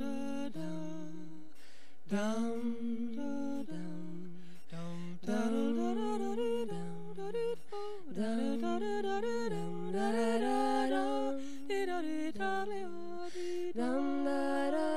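Three women singing a cappella in close harmony, a slow folk song of long held notes; the parts are sparse at first and fill out into fuller chords from about five seconds in.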